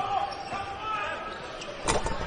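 Basketball game in a gym: thin squeaks on the court, then near the end one loud bang as a dunk hits the rim.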